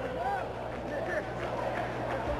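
Outdoor football-pitch ambience: steady background noise with a low hum underneath and a few faint, distant voices of players calling out.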